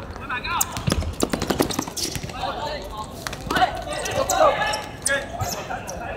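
A football being kicked and bouncing on a hard outdoor court: a run of sharp thuds in the first two seconds or so, with players' voices calling out over the play.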